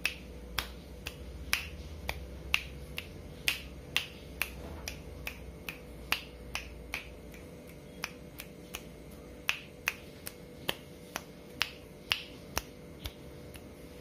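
Fingers snapping over and over in an uneven rhythm, about two sharp snaps a second.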